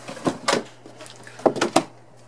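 Cardboard shoebox lid being taken off by hand: two clusters of short knocks and scrapes, the first just after the start and the second about a second and a half in.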